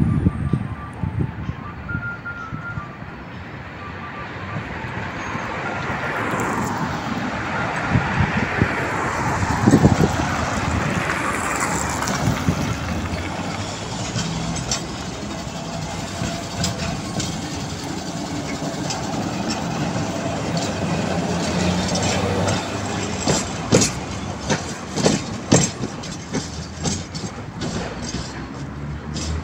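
A 71-608K tram running past on its rails, the rolling rumble swelling as it comes near, with a brief high squeal about halfway through. Near the end come sharp clicks and knocks as its wheels cross the track.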